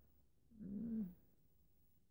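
A woman's short wordless hum of hesitation, a single 'hmm' about half a second long, starting about half a second in; otherwise faint room tone.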